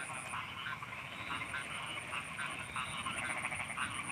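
Frogs calling at night, a faint chorus of short croaks repeated several times a second, over a steady high-pitched whine.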